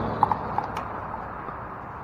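Pickleball paddles hitting a hard plastic ball: two sharp pops close together about a quarter second in, and a fainter one about half a second later.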